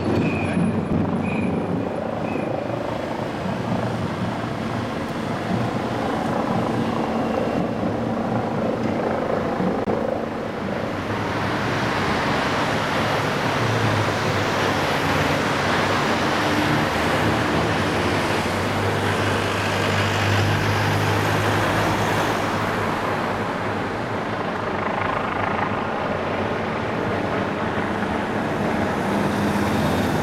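Traffic noise from a convoy of police vans driving past on a city street: engines running and tyres on the road. It swells about a third of the way in as vehicles pass close, with a deep engine drone at its strongest a little past the middle.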